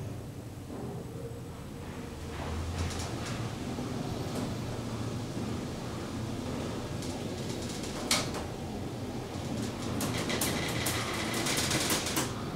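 Machine-room-less traction elevator car travelling between floors, heard from inside the cab: a steady low hum from the drive. There is a sharp click about eight seconds in and a run of faint clicks near the end as the car arrives.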